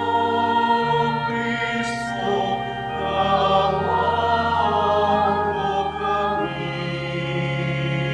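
Church choir singing part of the Mass in several voices over a sustained instrumental accompaniment, whose low bass notes change every one to three seconds.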